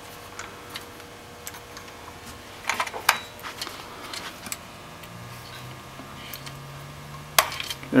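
A few light metallic clicks and clinks as a steel pin on a chain is worked at a cannon carriage's trunnion cap; the sharpest click comes about three seconds in, another just before the end.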